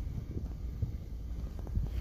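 Low, steady rumble of wind noise on a phone microphone, with a couple of faint knocks.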